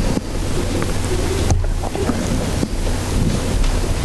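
Steady rushing microphone noise over a low electrical hum, with a few knocks about a third and two thirds of the way through: a handheld microphone being handled as it is passed to someone in the audience.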